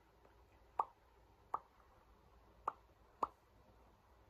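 Four short, sharp clicks at uneven spacing, the first about a second in and the last two close together near the end.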